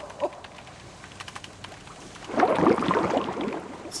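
Rapid computer keyboard typing, a fast run of light clicks, then about two seconds in a louder, denser burst of noise lasting about a second.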